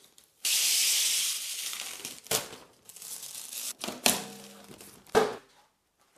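Adhesive shipping tape being peeled off a 3D printer's glass door in one long ripping pull, followed by a few shorter tearing and crinkling sounds.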